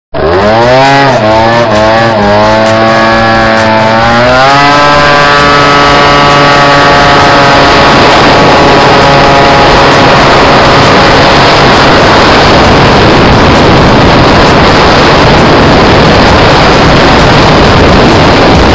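Piaggio NRG 50cc two-stroke scooter engine, fitted with a Polini variator kit and Leovince ZX exhaust, accelerating hard from a standstill at full throttle. The revs climb with a few brief dips over the first four seconds, then the variator holds them at a steady high pitch while the speed builds. A rushing noise grows louder over the engine as the scooter speeds up.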